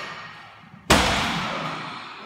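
A loaded barbell of about 217.5 kg set down on a wooden lifting platform at the end of a deadlift rep, landing about a second in with one heavy thud and a ringing clatter of plates that dies away over a second.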